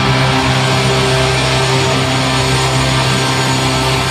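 A live rock band with electric guitars and bass holding a steady, sustained chord that rings on at full volume.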